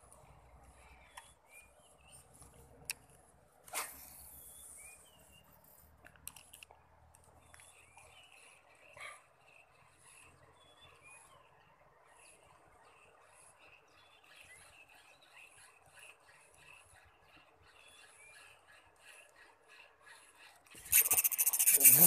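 Quiet riverbank ambience with birds chirping again and again over a faint steady background. About 21 s in, a sudden loud burst of rapid buzzing: an ultralight spinning reel's drag screaming as a hampala strikes the micro spoon.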